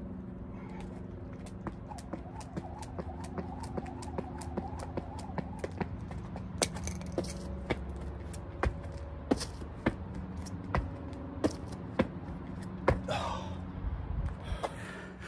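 Jump rope slapping the concrete in a quick, even rhythm, about two to three slaps a second. After about six seconds the slaps come sparser, louder and uneven. A steady low hum runs underneath.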